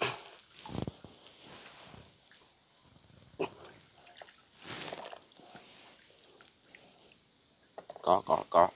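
Water sloshing and splashing in a few short, irregular bursts as a bag fish net is hauled up out of the river over the side of a wooden boat, over a faint steady high chirr of night insects.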